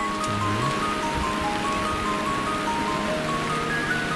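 Steady heavy rain, mixed under background music: a light melody of single high notes.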